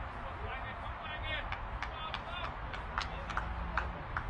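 Short high chirps and calls, several in quick succession, over a steady low background hum.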